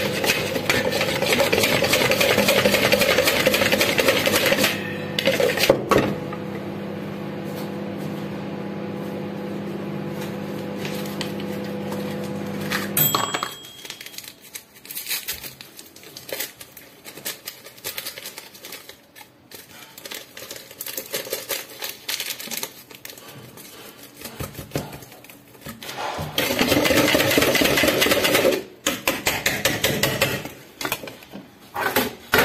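Wire whisk beating a mixture in a plastic bowl: fast, loud scraping strokes that ease off after about four seconds and stop short about thirteen seconds in. Scattered light clinks and knocks follow as an ingredient is added, and the whisking starts again near the end.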